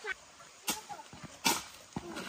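Hoe blades striking into sandy soil in three short, sharp chops about two-thirds of a second apart, while earth is dug out and loaded into a bucket.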